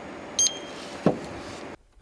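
Handheld barcode scanner giving one short high beep as it reads the excise stamp on a bottle, the beep signalling a successful read. A single sharp knock follows about half a second later, over a steady low room hum.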